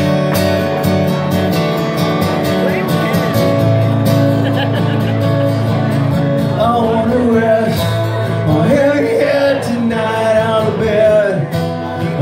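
Two acoustic guitars strumming a country-folk song intro at a steady tempo, with a harmonica melody coming in about halfway through.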